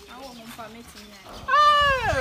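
A quiet, low murmuring voice, then about one and a half seconds in a loud, high, drawn-out cry that falls in pitch, like a cat's meow.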